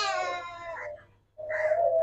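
Goat bleating: two high, drawn-out bleats, the first dying away about a second in and the second starting shortly after and holding a steady pitch.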